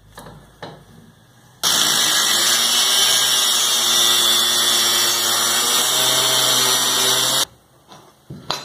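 Angle grinder in a cut-off stand cutting through steel tube with an abrasive disc: a loud, steady grinding whine that starts suddenly about a second and a half in and stops abruptly near the end. Before it, a few faint clicks as the tube is clamped in the stand's vise.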